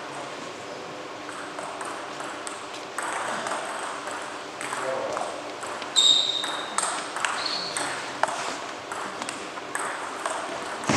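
Table tennis ball clicking off bats and table in a rally, a few sharp knocks about a second apart in the second half, over the murmur of voices in a sports hall. Two short high squeaks, one about six seconds in and another shortly after, are the loudest sounds.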